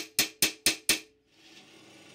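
Light hammer taps on a steel centre punch, about four a second with a slight metallic ring, marking the new hole centre on a plugged cast iron mounting lug. The tapping stops about a second in and a faint steady hiss follows.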